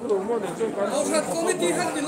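Several people talking at once close by, a mix of chatter in a large room.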